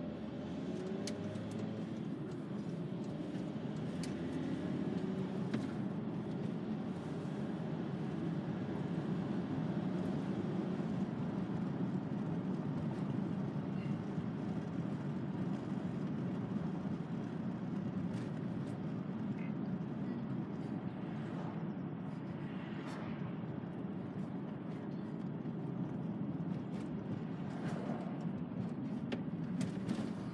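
Steady driving noise heard from inside the cab of a VW T5 Transporter van, a drone of engine and tyres on the road. The engine's pitch shifts in the first couple of seconds as the van accelerates away from a roundabout, then settles into an even cruise.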